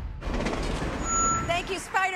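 A short steady high beep-like tone about a second in, followed near the end by a person's voice whose pitch slides up and down.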